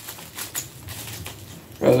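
Scissors cutting into a mailer envelope, with snips and the rustling of the envelope.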